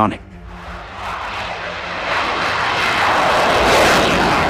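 Sukhoi Su-57 fighter jet flying past low: a jet-engine rush that swells over about three seconds to its loudest near the end, then begins to fade.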